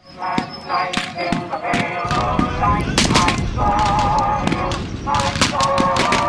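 Rapid blank rifle and machine-gun fire crackling throughout, with many men yelling together over it from about two seconds in.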